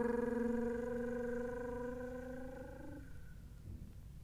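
A single held musical note, one steady pitch with overtones, dying away gradually and gone about three seconds in.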